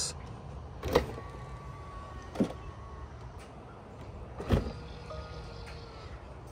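Tesla Model 3 doors being opened from the outside handle. About a second in there is a latch click, then a thin steady whine from the power window motor as the frameless glass drops slightly, and another click. Near the end a second door clicks open and its window motor whines briefly.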